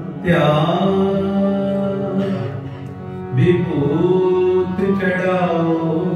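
Male voice singing a Sikh shabad in long, bending held phrases over a steady harmonium drone. The voice enters just after the start, eases off around the midpoint and starts a new phrase a moment later.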